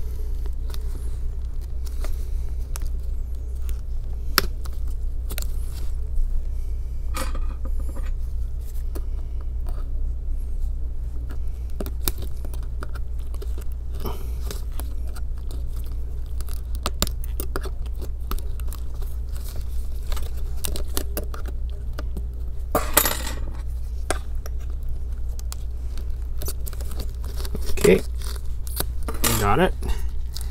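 Small scattered clicks and scrapes of metal tweezers and a steel pry tool picking at the edge of a laptop LCD panel to catch its adhesive pull-strip, with one louder rustle about three-quarters of the way through, over a steady low hum.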